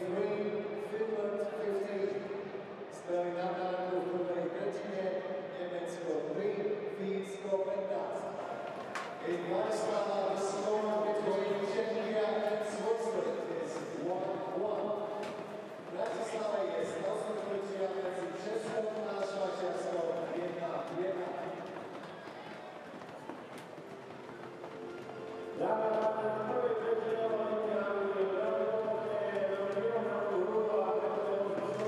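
Ice hockey arena sound: a sung or chanted tune, from the crowd or over the public address, fills the arena, with scattered sharp clicks and knocks. It drops lower for a few seconds past the middle and comes back louder near the end.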